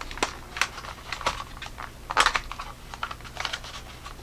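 Clear plastic blister packaging clicking and crackling in irregular taps as headlamp parts are pried out of it, with a longer, louder crackle about two seconds in.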